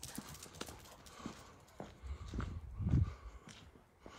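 Irregular taps of footsteps on hard ground during a walk with a dog, with a louder low rumble about three seconds in.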